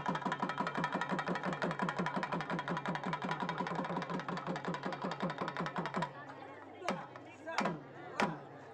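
Two double-headed barrel drums played in a fast, even roll of about seven strokes a second, with a steady ringing tone above the beats. The roll stops about six seconds in, and two single, slower strokes follow near the end.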